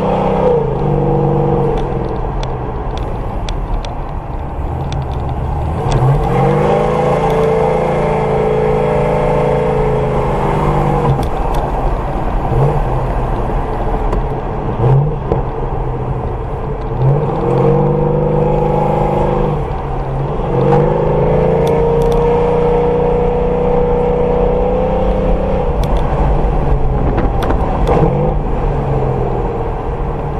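Car engine pulling hard through the gears, its pitch climbing and then dropping back at each shift, heard from inside the cabin.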